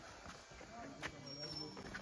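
Faint voices of people talking, with a light knock about a second in.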